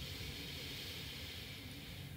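A woman's long, steady breath through the nose, heard as a soft hiss that fades out near the end.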